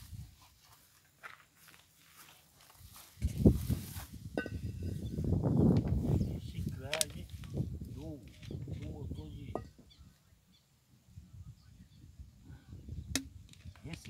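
Knocks and clinks of a frying pan being set on a small charcoal stove, the loudest a knock about three and a half seconds in, over a low rumble. Faint voices come and go.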